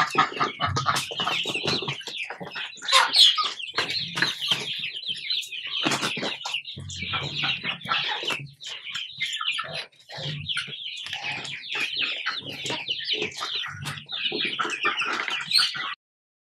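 A flock of Rhode Island Red chickens clucking and chattering continuously while feeding, with frequent quick taps of beaks pecking at coconut pulp on a plastic slatted floor.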